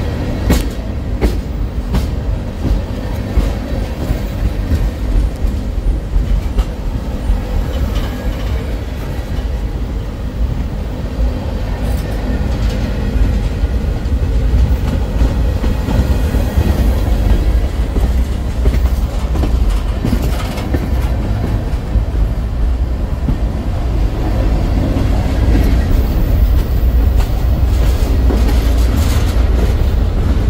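Freight train rolling past close by: steel wheels of tank cars and covered hoppers clacking over the rail with a steady, heavy low rumble and sharp clicks now and then.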